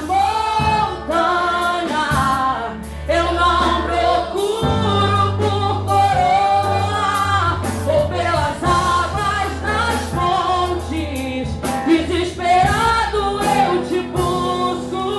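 A woman singing a Portuguese-language gospel worship song into a handheld microphone, over instrumental backing with long held low notes.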